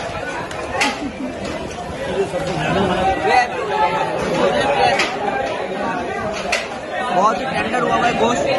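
Chatter of many diners talking at once in a crowded restaurant hall, with a few short sharp clicks.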